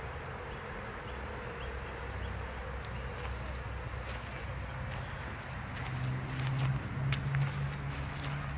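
A low buzzing like a fly close to the microphone, over steady outdoor background noise. The buzzing grows louder about six seconds in, with a few light ticks near the end.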